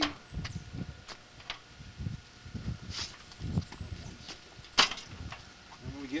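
Homemade steel bandsaw stand being rolled on its small wheels over concrete: an uneven low rumble broken by several clanks and knocks from the metal frame, the sharpest a little before the end.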